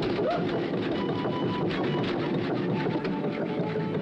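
Vibrating dust-shaking floor grate running, a fast, even mechanical rattle.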